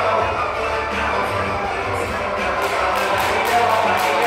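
Background music throughout. About two and a half seconds in, a jump rope starts slapping the floor in fast, even ticks, about four or five a second, as double-under skipping begins.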